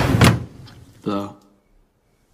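A lattice window being opened: a loud scraping rattle of the frame in the first half-second, then a short low creak about a second in.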